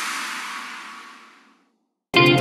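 A break in an electronic dance track: the beat has dropped out and a hissing whoosh-like noise effect fades away, dying to silence about one and a half seconds in.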